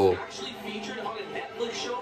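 A man talking at moderate level, with quiet background music under his voice. A short exclaimed 'oh' comes right at the start.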